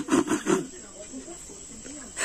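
A few short breathy mouth sounds from the man in the first half second, then a low steady background of crickets trilling.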